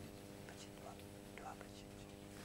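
Faint, near-quiet room sound: a steady low electrical hum with faint whispering and a few small rustles and clicks.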